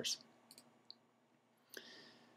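Quiet pause with a few faint, short clicks, the last and longest near the end.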